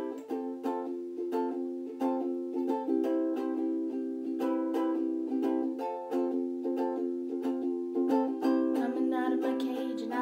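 Acoustic string instrument strummed in an even rhythm, playing the song's opening chords in a small room. A voice starts singing near the end.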